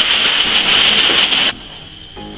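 Warm liquid and sugar sloshing and churning inside a five-litre plastic water bottle shaken hard to dissolve the sugar, stopping suddenly about one and a half seconds in.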